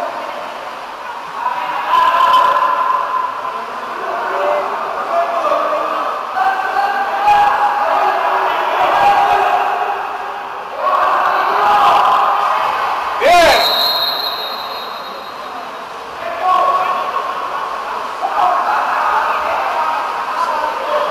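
Voices calling and shouting in a large indoor swimming-pool hall during a water polo game. About thirteen seconds in there is a single sharp bang, followed by a thin high tone lasting a second or so.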